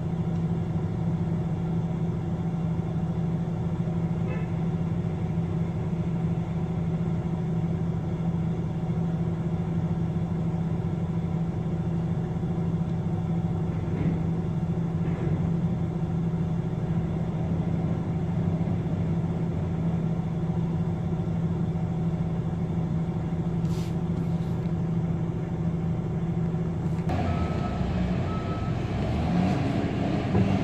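Heavy diesel machinery running steadily with a constant low drone, as a reach stacker handles shipping containers beside a truck trailer. About three seconds before the end the engine note swells, and two short high beeps sound.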